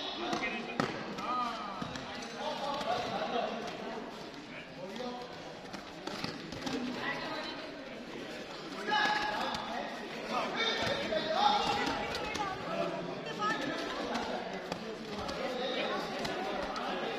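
Several voices talking in a large sports hall, with scattered dull thuds.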